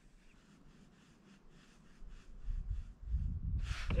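Spinning reel being cranked in a steady retrieve, a faint ticking about four times a second. Handling bumps build in the second half, and a brief loud rush of noise comes near the end as a trout takes the lure and the rod is lifted.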